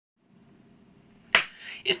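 A single sharp finger snap about two-thirds of the way through, ringing briefly in the room, against faint room tone, then a man's voice starting right at the end.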